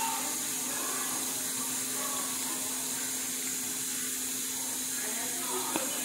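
Steady hiss of rice and shredded chicken sizzling gently in a pan on the stove, with a faint low hum underneath.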